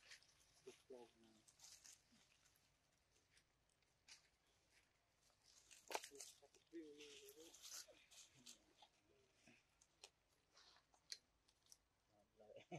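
Near silence: faint, scattered rustling and small clicks, with one sharper click about six seconds in.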